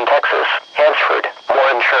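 Speech only: the NOAA Weather Radio broadcast voice reading a severe thunderstorm warning through a radio receiver, thin-sounding, with short pauses between phrases.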